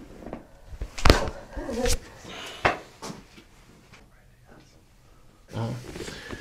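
Thoracic spine adjustment: one sharp, loud crack about a second in as the chiropractor thrusts down on the patient's mid-back during her exhale, followed by a few softer pops. Short vocal sounds from the patient come between them, and a brief "oh" near the end.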